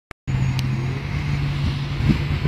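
Car engine running steadily at idle, an even low engine note that starts after a brief click right at the beginning.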